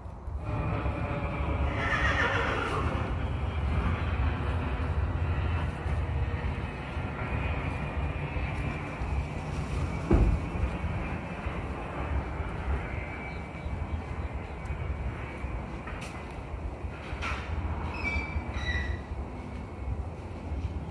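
A horse whinnying, a single call falling in pitch about two seconds in, over a steady low rumble. There is one sharp knock about halfway through.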